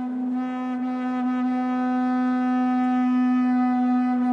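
An ice horn, a horn made of ice, sounding one long, steady low note rich in overtones, swelling slightly in loudness.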